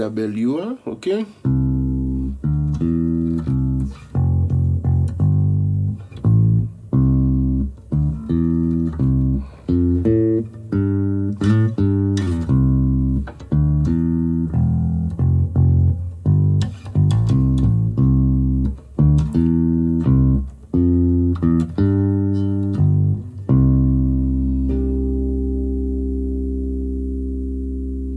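Electric bass guitar played through an Ampeg bass combo amp, recorded with a DI and a mic on the amp: a bass line of short plucked notes, ending on one long held note that rings for about four seconds.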